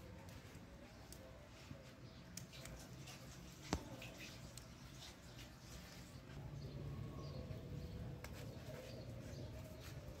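Faint crackling of a wood fire burning under a metal comal, with a few sharp pops, the loudest about a third of the way in.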